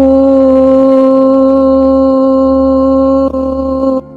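A woman chanting a single long "om", held loud at one steady pitch, with a brief catch about three seconds in before it ends; soft ambient music runs underneath.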